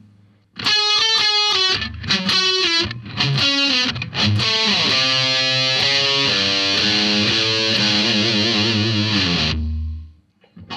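Distorted electric guitar playing a lead phrase slowly, in a swinging rhythm with space between the notes. The phrase runs into a long held passage with wavering vibrato on the last notes and is cut off suddenly near the end.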